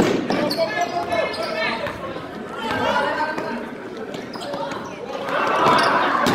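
Pickup-style basketball game in a gymnasium: players' shouted calls echo around the hall over a basketball bouncing on the hardwood floor, with a louder burst of voices near the end.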